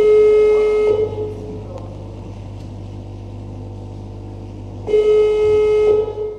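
A loud horn blast lasting about a second, then a second blast about four seconds later, with a steady low hum between.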